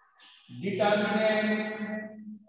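A man's voice holding one long, steady-pitched vowel or hum, starting about half a second in and lasting nearly two seconds.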